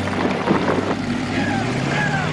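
Motorboat engines running at speed, with water rushing and splashing from the hulls.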